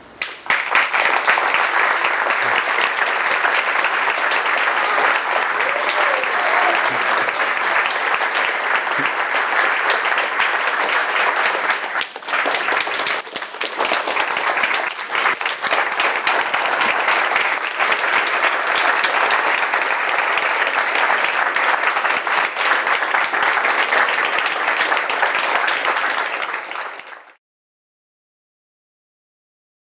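Theatre audience applauding steadily with a dense, even clapping, starting right after a talk's closing line; it cuts off suddenly near the end.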